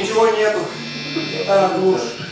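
A steady electric buzz, as from live guitar amplification idling on stage, with a voice speaking briefly twice over it.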